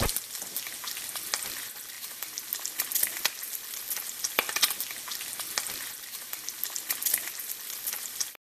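Food frying: a steady sizzling hiss dotted with many sharp crackling pops.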